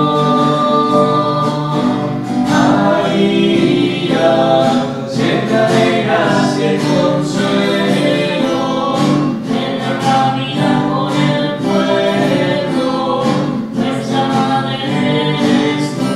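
Voices singing a Spanish-language hymn to the Virgin Mary, the closing hymn of a Catholic Mass.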